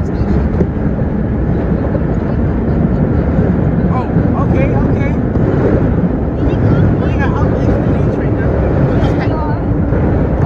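A 1932 R1 subway car running at speed through a tunnel: a loud, steady rumble of wheels on rail and traction motors. Faint voices chatter underneath it.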